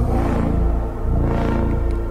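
Music from an Instagram video's soundtrack, made of low, steady held tones.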